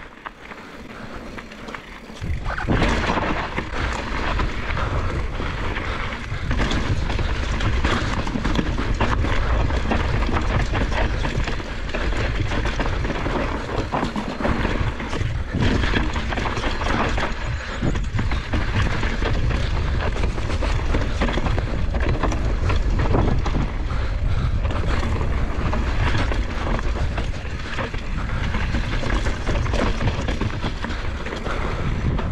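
Wind buffeting an action-camera microphone as a mountain bike descends a dirt trail. Tyres roll over dirt and gravel, and the bike rattles and knocks over rocks and roots. The noise gets much louder about two and a half seconds in and stays dense after that.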